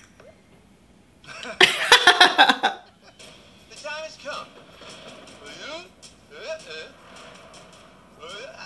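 Voices only: a short loud vocal outburst about one and a half seconds in, then quieter, indistinct talking.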